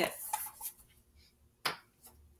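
The tail of a woman's spoken word, then a quiet stretch and one short, sharp click near the end as a small whiteboard and its dry-erase marker are handled.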